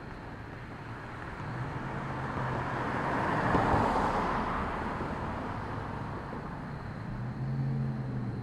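A car passing by on the street: tyre and engine noise swelling to a peak about halfway through, then fading, with a low engine hum rising again near the end.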